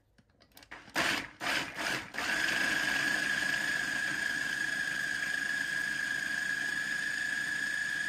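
Electric food processor starting about two seconds in and then running steadily with a high whine, grinding soaked chickpeas with onion, parsley and garlic and no added water. Before it starts there are a few short knocks as the machine is handled.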